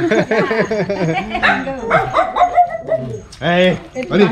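Small dogs yipping and whining in quick, overlapping calls, with a louder bark near the end.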